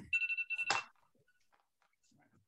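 Short electronic alert tone, a trilling ring of a few steady pitches lasting under a second, ending with a click, followed by near silence.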